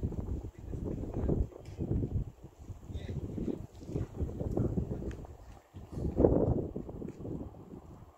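Wind buffeting the microphone in irregular low rumbling gusts, the strongest about six seconds in.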